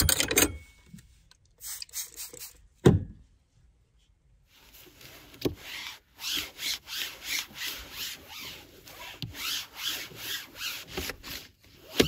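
A few handling knocks and a thump in the first three seconds, then steady back-and-forth wiping strokes, about two a second, as a hand rubs an oily flat board on the counter clean.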